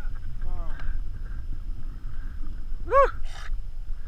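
A steady low rumble of wind and water on a GoPro action camera's microphone, with faint laughter early on and a man's voice saying "very nice" about three seconds in.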